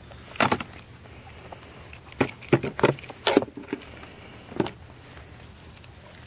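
Knives and gear being handled in a plastic tool box: a series of short clicks, knocks and rattles, one about half a second in, a cluster between about two and four seconds, and one more later.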